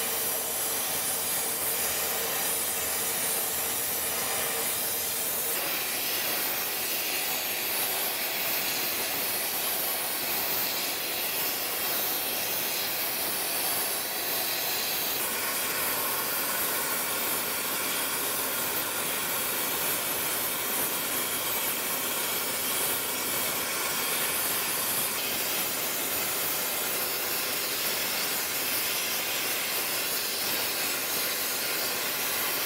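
Oxy-fuel torch with a brazing tip, its flame hissing steadily while it heats the steam pipe joint for brazing. The hiss changes tone slightly a few seconds in and again about halfway through.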